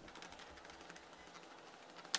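Faint crackling of a kitchen knife cutting through rolled sheets of phyllo pastry in baklava rolls.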